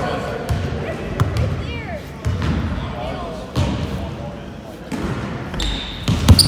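Basketball being dribbled on a hardwood gym floor, a few sharp bounces ringing in the large hall, with voices murmuring in the background.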